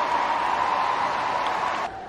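Stadium crowd cheering a goal, a steady roar that cuts off suddenly near the end.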